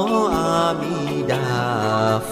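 Slow Buddhist devotional chant sung over music, the voice holding long notes and sliding between them.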